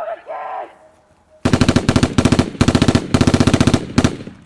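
Rapid machine-gun fire in about four quick bursts, starting about a second and a half in and stopping just before the end, after a brief spoken line at the start.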